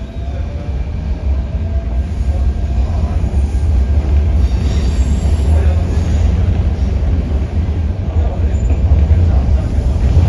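Cabin interior of an MTR K-Train (Hyundai Rotem–Mitsubishi electric multiple unit) pulling away from a station into a tunnel. A deep rumble of wheels and running gear grows steadily louder as the train picks up speed, with a faint rising motor whine in the first few seconds.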